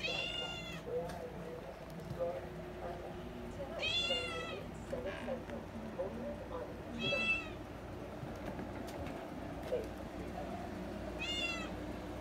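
A domestic tabby cat meowing four times, short high-pitched meows a few seconds apart.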